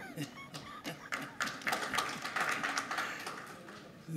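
Scattered, irregular hand claps or taps from an audience, thickening for a couple of seconds and then thinning out, with faint voices underneath.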